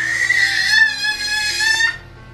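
A toddler's long, high-pitched squeal of excitement, held on one high note and cut off near the end, with background music underneath.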